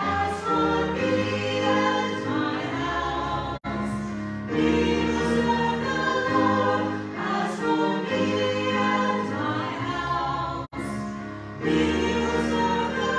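A small women's vocal group singing a sacred song in long, held phrases over a steady keyboard accompaniment. The sound drops out for an instant twice, about a third of the way in and again near the end.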